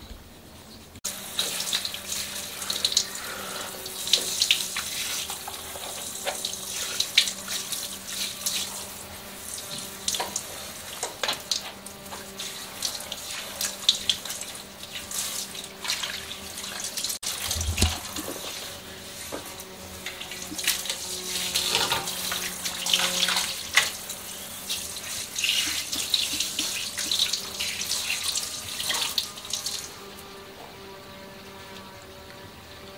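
Water from a handheld salon shampoo-bowl sprayer running through long hair and splashing into the sink basin, starting about a second in. A brief low thump comes just past halfway.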